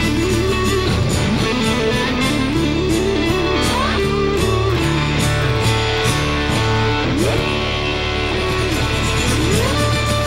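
Live instrumental duo of acoustic-electric guitar and bass guitar: a fast finger-picked guitar melody over a steady bass line. Several rising slides in pitch come in the second half.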